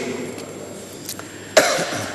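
A single short cough close to the microphone about a second and a half in, after a brief quiet pause with only low room noise.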